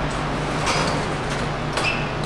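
Large drum fan running: a steady rush of moving air over a low motor hum.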